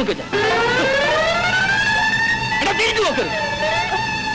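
A man's long drawn-out call that rises smoothly in pitch for about two seconds and then holds, with a shorter voice-like cry about three seconds in.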